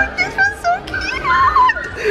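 A child's high-pitched, excited voice squealing and vocalising without clear words, in short bursts with changing pitch.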